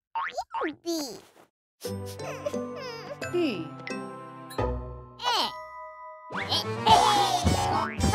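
Children's cartoon soundtrack: playful background music under high, sliding, wordless cartoon-character vocalizations. There is a short pause about a second in, and the mix is loudest and busiest near the end.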